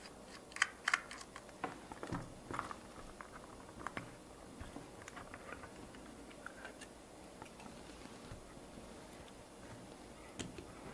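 Faint light clicks and plastic ticks from a small screwdriver prising the plastic body shell off an H0 Märklin Traxx model locomotive's chassis, the sharpest clicks in the first second and thinning out after about five seconds.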